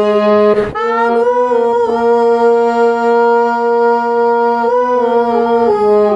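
Harmonium playing a slow melody: one long held note from about a second in until near the five-second mark, over a steady lower note, with note changes at the start and near the end.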